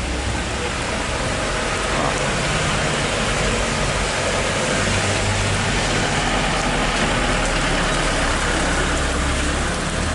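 Rainy street ambience: a steady hiss of rain and traffic on the wet road, over a low vehicle engine hum.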